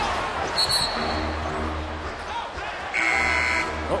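NBA arena crowd noise on a game broadcast. A short, high referee's whistle sounds about half a second in, and near the end the arena horn (buzzer) blares for under a second.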